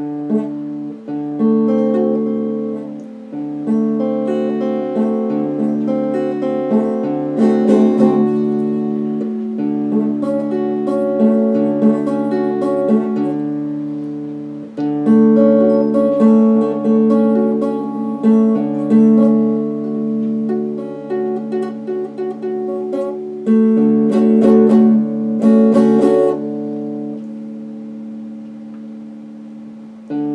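Electric guitar played slowly: picked chords and single notes that ring on and overlap. The playing thins out about halfway through, and near the end a last chord is left ringing and fading.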